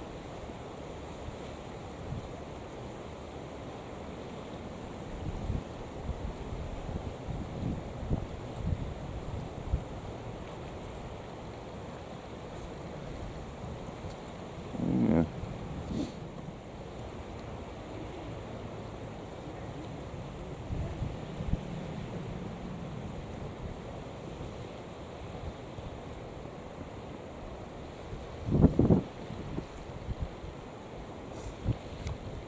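Wind buffeting the microphone over a steady low rush, swelling in gusts. A short louder sound comes about halfway through and again near the end.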